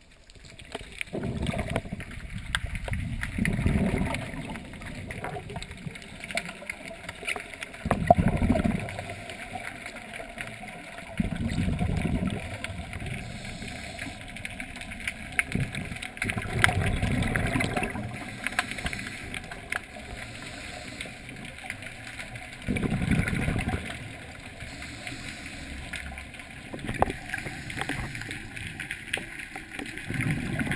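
Scuba divers' exhaled regulator bubbles, recorded underwater: a low bubbling rumble that comes in bursts about every five to six seconds, one burst for each breath out.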